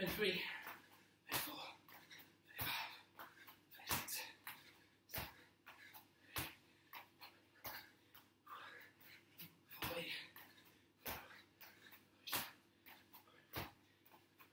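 Trainers landing on a tiled floor in repeated two-footed jumps over a water bottle, a firm landing about every second and a quarter with a lighter balance hop between, and hard breathing between the landings.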